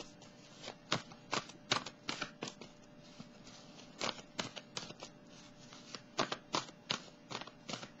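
Tarot cards being shuffled by hand: irregular clusters of soft, crisp card snaps and flicks with short pauses between them.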